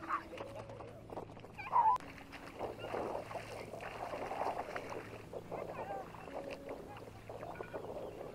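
Children's high voices calling and squealing, the loudest a short squeal about two seconds in, with water splashing as they play in shallow puddles.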